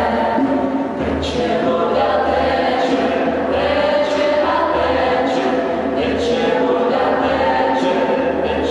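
A small group of mixed male and female voices singing together in long held, chant-like lines, with a hand drum keeping a slow beat, in the reverberant space of a stone church.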